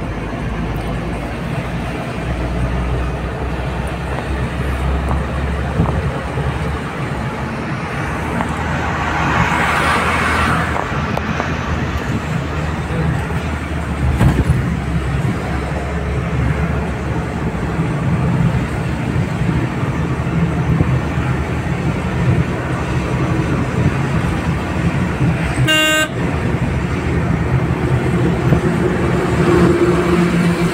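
Steady engine and road rumble of a car driving on a highway, heard from inside the car. There is a brief swell of noise about ten seconds in, and a single short horn toot near the end.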